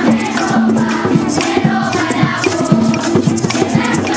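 Children's choir singing with strummed cuatros, Venezuelan four-string guitars, keeping a quick, steady strumming rhythm under the voices.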